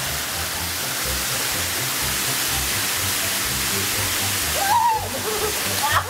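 Steady rush of falling water from a pool waterfall and water slide, with background music's bass notes underneath. A short voice cry comes near the end.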